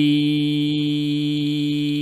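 A man's voice chanting in melodic Quran recitation, holding one long, steady note.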